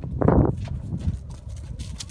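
Hoofbeats of a ridden horse cantering over a dry stubble field, with a brief louder burst just after the start.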